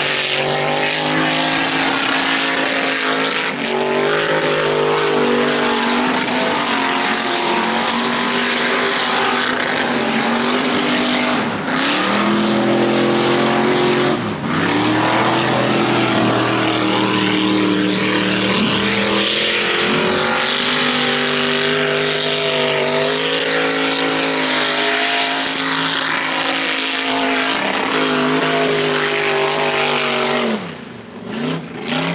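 Tube-frame off-road buggy's engine revving hard as it races round a dirt course, the pitch climbing and falling again and again as it accelerates and backs off. Twice, partway through, the engine briefly lifts off before pulling hard again.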